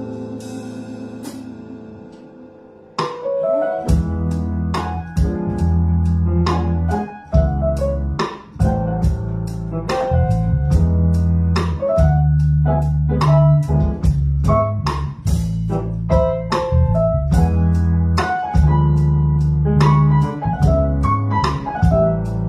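Live band playing piano, electric bass and drum kit. A held keyboard chord dies away over the first few seconds, then at about three seconds the full band comes back in together, with bass notes, regular drum hits and short piano chords over a steady beat.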